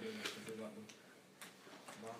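Faint, low speech in a quiet room, with a few light clicks.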